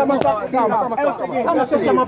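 Overlapping speech: several people talking at once.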